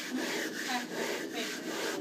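A glass telescope mirror blank being ground by hand against a grinding tool: a scraping rub repeated with each back-and-forth stroke as the concave hollow is worked into the mirror.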